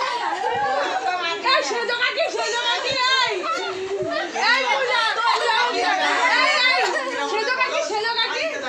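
Several people talking over one another in lively group chatter.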